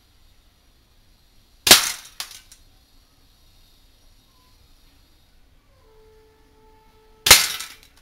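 Gas-powered Aimtop SVD airsoft rifle firing two single shots about five and a half seconds apart, each a sharp crack. A lighter click follows about half a second after the first shot. Each shot is a single discharge with no doubling, in a test of the fix for the rifle's double-firing fault.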